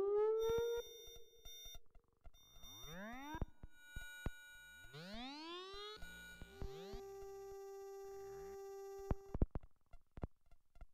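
Electronic music of sine-like synthesizer tones: repeated upward pitch swoops, a long steady held tone through the middle, and scattered sharp clicks. The loudest swoop comes right at the start.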